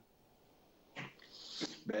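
Near silence, then about a second in a man makes a short vocal sound followed by a breathy exhale that grows louder before his answer.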